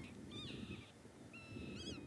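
Faint wild bird calls: several short, wavering whistles in quick groups, one group about half a second in and another in the last half second.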